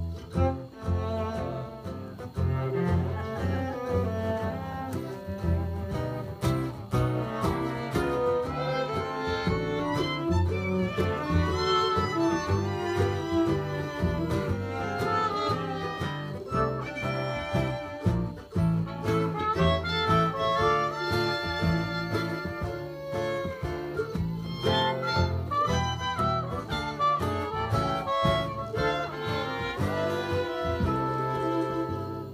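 Live acoustic string band playing a tune: bowed fiddle and cello lines over strummed acoustic guitar and a steady plucked double-bass beat.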